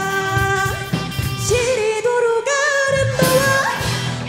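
Live rock band playing a pop-rock song: a female lead vocal sings long held notes over electric guitars, bass, drums and keyboard. The low end thins out briefly a little past halfway, then the full band comes back in.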